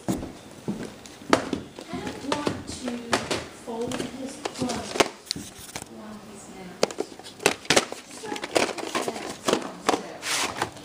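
Low, mumbled speech over repeated sharp clicks and knocks of VHS tapes and their cases being handled and shuffled.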